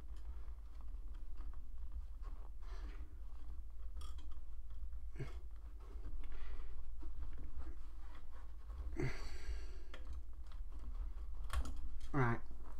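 Small, irregular clicks and scrapes of a screwdriver and a tiny screw working into a plastic scale-model trim strip, with a louder rustle about nine seconds in, over a low steady hum.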